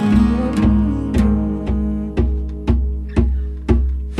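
Acoustic guitars playing the instrumental intro of a rock song, strummed in a steady beat about twice a second over a low bass note.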